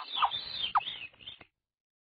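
Chipmunk calling: a few short, high chirps that drop quickly in pitch, the last about three-quarters of a second in. It all stops about a second and a half in.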